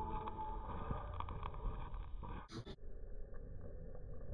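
Slowed-down, muffled sound of a Zippo lighter flame as orange peel oil is squeezed into it: a faint low rumble with light ticks. A brief sharp click comes about two and a half seconds in.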